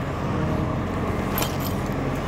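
Steady low mechanical hum in the background, with a brief metallic jingle of a fall-protection harness's buckles and D-ring about one and a half seconds in as it is picked up.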